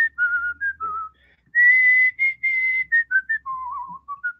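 A man whistling a tune through pursed lips: a run of short and held notes, one clear tone at a time, with a brief pause about a second in. The highest, longest notes come around the middle and the tune settles lower near the end.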